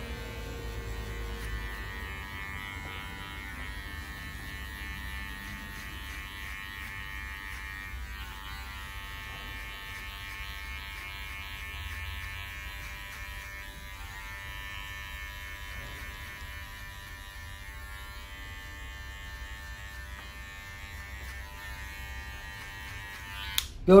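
Cordless electric hair clipper fitted with a 4.5 mm guard, buzzing steadily as it is run flat over the nape and sides to blend away clipper lines in a short haircut. It cuts off near the end.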